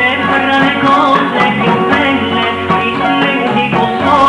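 A recorded song: a singing voice over an instrumental backing that includes guitar, playing continuously.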